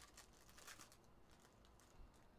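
Foil wrapper of a trading-card pack being torn open and crinkled, faint, with the scratchiest tearing in the first second.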